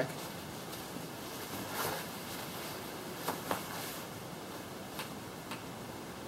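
Faint rustling and a few soft, scattered clicks from a nylon hammock and its tree strap and cinch buckle as a person's weight settles into it, over a steady background hiss.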